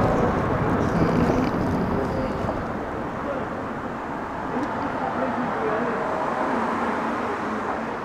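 Urban street ambience: steady traffic noise with indistinct voices, slowly getting quieter.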